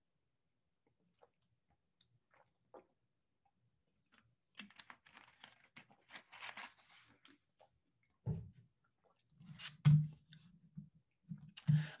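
A person drinking from a water bottle and handling things at a desk microphone: faint scattered clicks, a few seconds of rustling and clicking in the middle, then short low throat sounds in the last few seconds.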